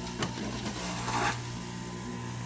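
Jack LaLanne's Power Juicer motor running with a steady hum while fresh ginger is pressed down its feed chute, the cutting basket grinding it briefly about a second in.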